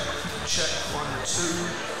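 A man's voice doing a microphone check over the PA, counting "one, two" with sharp hissy consonants.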